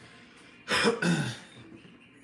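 A person clearing their throat once, a short rough burst starting about two-thirds of a second in and lasting well under a second.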